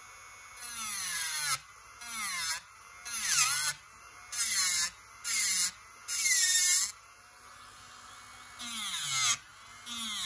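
SUNNAIL electric nail drill, set at 16, grinding down the product on a nail in about seven short passes. Each pass is a loud grinding whine whose pitch sags as the bit bears on the nail, with the motor's quieter whir between passes.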